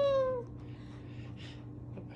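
Umbrella cockatoo giving one short call that falls in pitch, under half a second long, followed by faint rustling.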